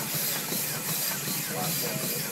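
Steady hiss of steam escaping from a 1913 New Huber steam traction engine, with people talking faintly underneath.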